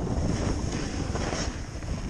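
Wind buffeting the microphone of a camera moving downhill over snow, a steady low rumble. Short hisses of sliding on snow come and go now and then.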